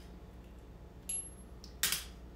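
A small metal candle-care tool clinks as it is set down onto a metal tray just before the end, after a fainter click about a second in.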